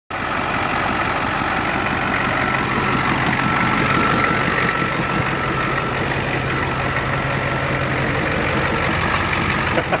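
A van-chassis bus's engine idling steadily, running after sitting unstarted for about six months.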